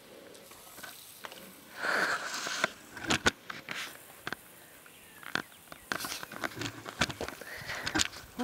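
Light clicks and clinks of a bridle being handled, its metal buckles and bit knocking as the straps are sorted, with a brief rush of noise about two seconds in.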